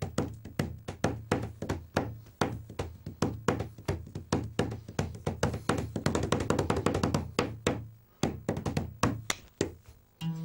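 Hands drumming fast on a cloth-covered tabletop, tapping out a drum beat at sixteen beats to the bar, several sharp taps a second over dull thuds. The drumming stops just before the end.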